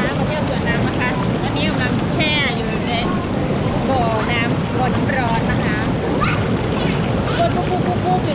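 Whirlpool bubble jets churning the pool water: a steady, dense rush of bubbling water.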